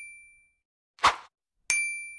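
Sound effects of a like-share-subscribe end-screen animation: a bright bell-like ding fading out, a short swoosh about a second in, then the same ding again near the end.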